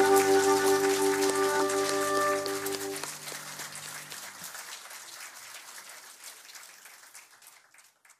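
The band's final held chord ringing out and stopping about three seconds in, with a low tone lingering a little longer, over audience applause that fades away and cuts off at the end.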